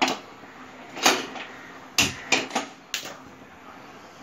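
A few sharp knocks and clinks of household objects: one at the start, one about a second in, then a quick run of four around the middle.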